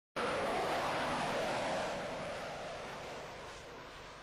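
Jet engine roar: a rushing noise that starts abruptly and fades away steadily over a few seconds.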